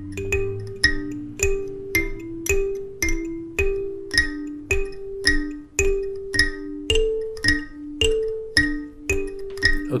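Two Goshen student karimbas, wooden-box kalimbas with metal tines, plucked together in unison in a simple repeating riff. Steady plucked notes, about two a second, mostly alternate between two low notes, with an occasional higher one.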